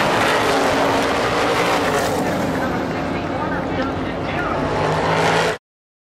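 Several supermodified race cars' V8 engines running at speed on the track, a dense steady din with engine notes rising and falling as cars pass. The sound cuts off suddenly near the end.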